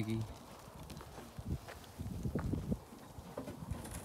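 Irregular footsteps and soft thumps on loose dirt, bunched together around the middle.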